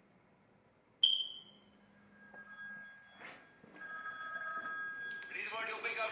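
A sharp click with a brief high ring about a second in, then from about four seconds a steady electronic tone held on several pitches, with a voice coming in near the end.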